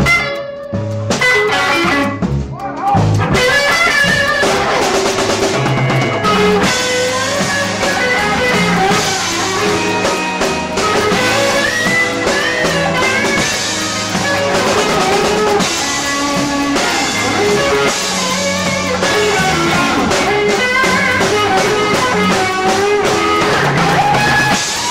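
Live blues band playing an instrumental passage on a cassette recording: guitar lead lines over bass and drums. The sound is thin at first, and the full band fills in about three to four seconds in.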